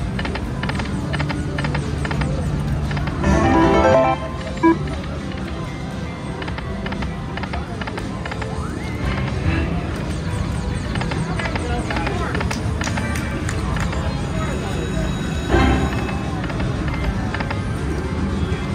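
Whales of Cash video slot machine spinning its reels over and over, with the game's music and short reel-stop clicks, over casino background noise and chatter. A louder stretch of sound comes about three to four seconds in.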